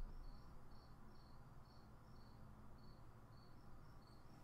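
Near silence with an insect chirping faintly: short high-pitched chirps repeating about two or three times a second, over a low steady hum.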